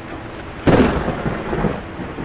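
Thunder sound effect: a sudden clap of thunder well under a second in, rolling off into rumble over a steady rain-like hiss.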